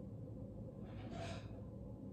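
Quiet room tone with one soft breath about a second in.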